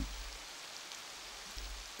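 Rain falling steadily on dense tropical forest foliage, an even hiss of drops on leaves.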